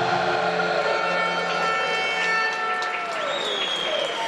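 Crowd applauding and cheering over music, with a high drawn-out tone sliding down slightly in the last second.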